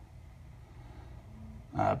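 Low, steady room noise in a pause of a man's talk, with a brief hesitant 'uh' near the end.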